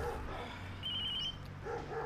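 Mobile phone ringing: a short, high electronic trill repeats about once a second, alternating with short dog-like yelps.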